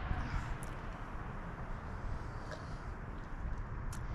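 Quiet outdoor background: a steady low rumble and hiss, with a couple of faint ticks.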